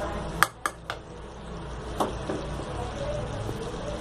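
A metal spoon clinks sharply against the cooking pan three times in the first second and once more about two seconds in. A steady low hiss runs under the clinks while the kadhi cooks.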